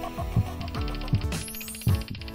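Outro music with a steady beat of low kick-drum thumps. A rapid, even ticking pattern joins about halfway through, and a rising whoosh comes near the end.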